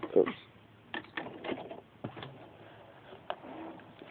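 Scattered light clicks and fabric rustling from a sewing machine and a quilt block being handled as the stitched block is pulled out from under the presser foot. The machine is not running.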